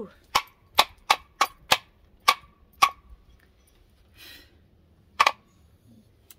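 Wooden corbels knocking together as they are handled: a quick series of about seven sharp wooden clacks over the first three seconds, then one more near the end.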